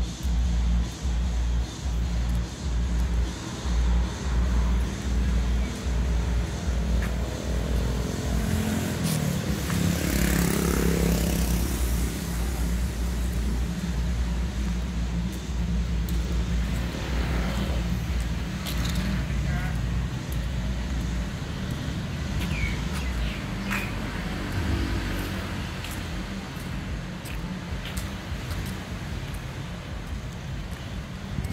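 Outdoor street ambience with music playing, its bass beat strong at first and fading away over the stretch. A vehicle passes about ten seconds in.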